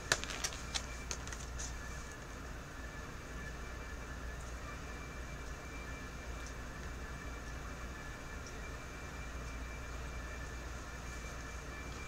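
A few light clicks of packaging being handled in the first two seconds, then steady low room hum.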